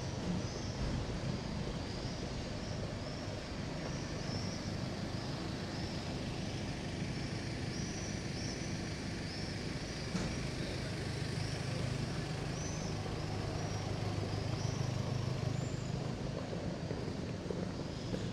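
A motor vehicle engine running, a low rumble that grows louder in the second half, over steady street background noise. Short faint high chirps repeat throughout.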